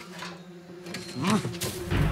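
A man's low, coaxing hum, 'mm-hmm', about a second in, over a faint steady low tone.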